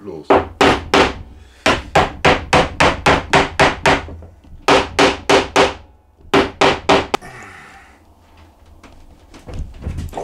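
A mallet knocking glued-up Bongossi hardwood strips into line, about eighteen sharp blows in four quick runs of roughly three a second, each with a short wooden ring. A brief scrape follows after about seven seconds.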